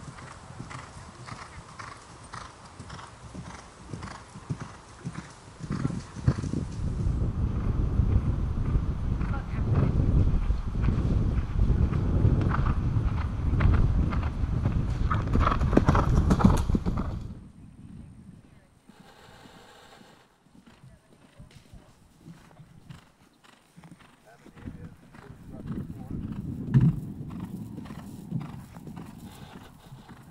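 A horse galloping past on turf, its hoofbeats building to a loud, dense pounding and then cutting off suddenly partway through. The quieter stretch that follows holds one sharp thump.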